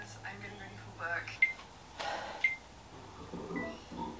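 Faint speech played back through a phone's small speaker, broken by three brief high beeps.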